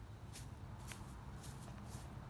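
Faint footsteps of a person walking across a grass lawn at an even pace, a soft step about every half second.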